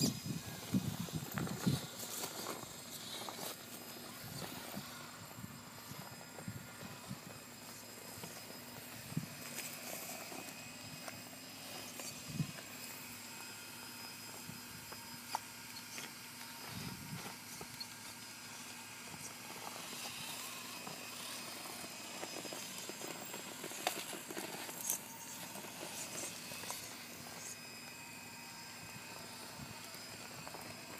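Axial XR10 rock crawlers' small electric motors whining quietly as they creep over rocks, with occasional knocks as tyres and chassis bump against the stones.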